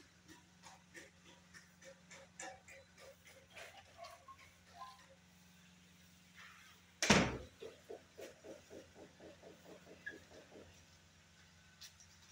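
Hand work on a ceiling cornice moulding: scattered light taps and clicks, one loud sharp knock about seven seconds in, then about three seconds of quick, even rubbing strokes, roughly six a second.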